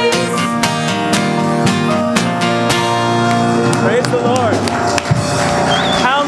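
Live worship band playing the last bars of a song, with guitar strums, drum hits and held chords and no more singing; about four seconds in, a voice begins talking over the music.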